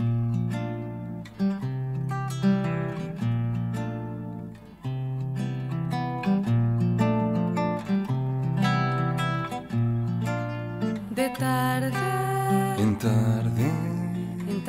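Instrumental intro of a trova song: plucked acoustic guitar notes over a low bass line. About eleven seconds in, a higher melody line with wavering, gliding notes joins.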